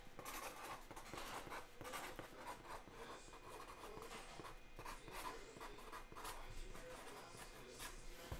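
Faint scraping and rustling of a cardboard case as a hand handles and slides it.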